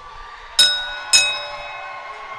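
Wrestling ring bell struck twice in quick succession, about half a second apart, the metallic ringing fading slowly after: the bell rung on the referee's three count.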